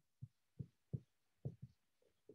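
Faint, soft low knocks of a marker against a whiteboard as letters are written, about five irregular taps in two seconds.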